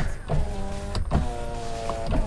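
Rear power window motor of a third-generation Nissan X-Trail running with a steady whine, with a short break about a second in. It is rather noisy.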